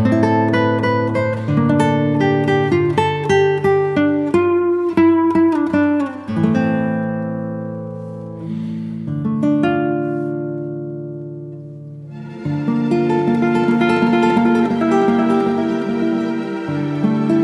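Instrumental music on plucked acoustic guitar, a string of ringing notes. About six seconds in, the playing thins to a few long notes that slowly die away, then picks up again after about twelve seconds.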